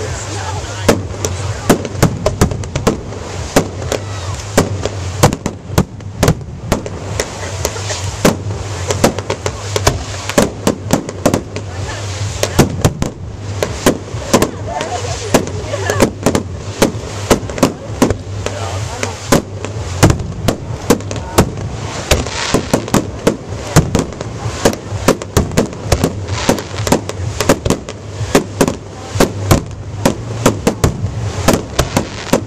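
Aerial fireworks shells launching and bursting in quick succession: a steady barrage of sharp bangs, several a second.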